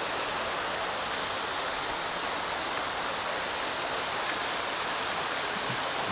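Steady rushing of flowing water: an even, unbroken hiss with no distinct splashes.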